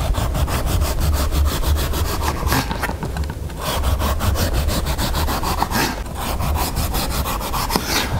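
A serrated knife sawing through the skin of a small pumpkin on a wooden chopping board, in quick, even back-and-forth strokes as the peel is sliced off.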